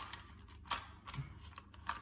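A few sharp hard-plastic clicks and taps from hands adjusting a handlebar phone holder, the loudest right at the start and another about two-thirds of a second in.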